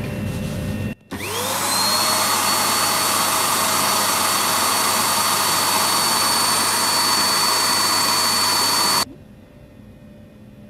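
Small vacuum with a hose and handheld sampling nozzle, used to pull loose pollen and dust off a book's pages. It comes on about a second in with a rising whine as the motor spins up. It then runs as a loud, steady hiss with a high whine, and cuts off suddenly near the end.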